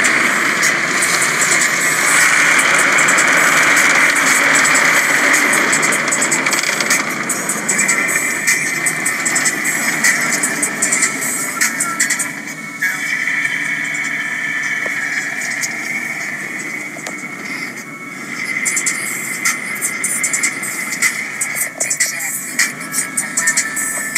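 Soft-touch automatic car wash heard from inside the car's cabin: water spray and foam wash material sweep over the windows and body, with dense slapping and swishing that thickens near the end. Music plays underneath.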